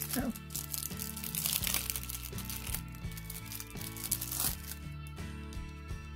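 Clear plastic sleeve of a packaged enamel pin crinkling as it is handled, loudest about one to two seconds in and again near the middle, over steady background music.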